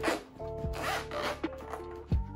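Zipper of a hard-shell gimbal carrying case being pulled open around the case in two short pulls, over background music with held notes.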